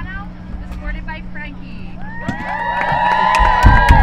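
A group of girls' voices shouting a team cheer together, starting about two seconds in and building to a loud, drawn-out yell, with a few low thumps near the end. A single voice talks just before the cheer.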